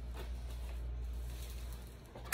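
Steady low hum with faint background noise and no distinct events: quiet room tone.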